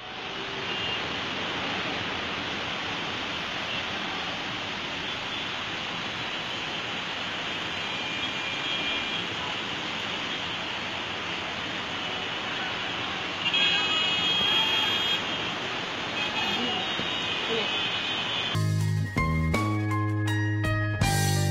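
Traffic noise from a gridlocked road: a steady wash of sound with car horns honking now and then. Near the end it gives way to a short music sting with a beat.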